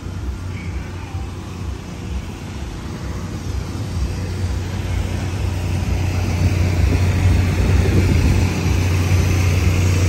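Predator 3500 portable generator running steadily, its low hum growing louder and nearer over the first seven seconds or so and then holding.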